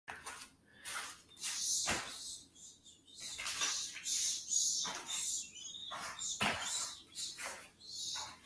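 A run of short, breathy, hissing bursts from a performer's breath and mouth as he moves, with two thuds of bare feet landing on the rubber mat floor, about two seconds in and again after six seconds.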